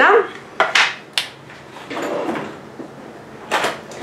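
Kitchen handling noises: a few short scrapes and knocks as jars are picked up and moved on the worktop, about a second in and again near the end.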